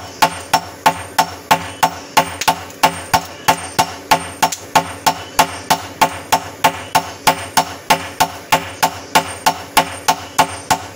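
Sledgehammer and hand hammer striking a red-hot blank of bearing steel on an anvil, hand-forging a machete blade. The blows come in a steady rhythm of about three a second, each with a short metallic ring.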